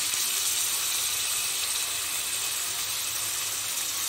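Sliced onions and ginger paste sizzling in hot oil in an aluminium kadai, a steady, even hiss.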